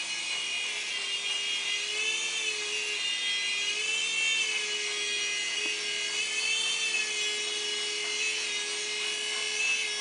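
WL Toys V388 Hornet remote-control toy helicopter in flight: a steady, high electric motor and rotor whine whose pitch rises and falls a little.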